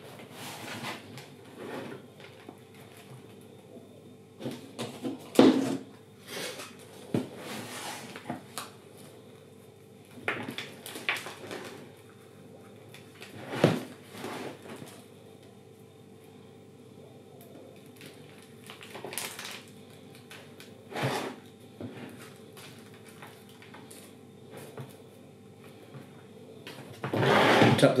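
Potting compost being scooped by hand and dropped into a square plastic plant pot, with dry rustling and scraping and a few sharp knocks of hands and pot against the plastic trays and table.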